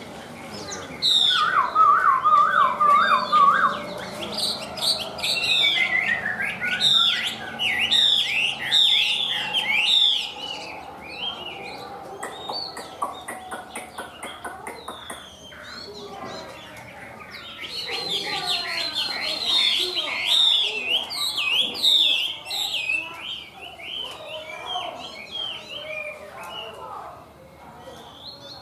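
Chinese hwamei singing a long, varied song of rapid whistled notes that swoop up and down. It is loud for the first third, eases off for several seconds in the middle, then picks up again before trailing off near the end.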